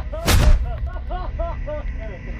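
A single gunshot, a sharp blast about a quarter second in that dies away within half a second.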